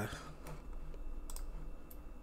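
A few separate, sharp computer mouse clicks.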